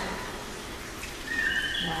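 Quiet room tone, then near the end a short, thin, high-pitched squeal that holds one pitch and then jumps higher. It comes from a woman as a snake is laid in her hand.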